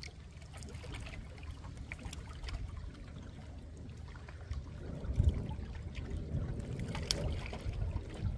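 Rhine river water lapping and trickling at the bank over a steady low rumble, swelling louder about five seconds in.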